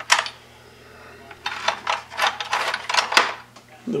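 Metal clinks and scraping as a hand works a Jacobs Rubber Flex collet chuck on a lathe spindle nose: one sharp clink just after the start, then a rapid run of scraping, clattering strokes in the middle.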